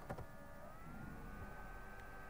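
Faint background noise in a pause in the lecture: a click at the start, then a steady high whine that slides slightly up in pitch about half a second in and holds there, over a low hum.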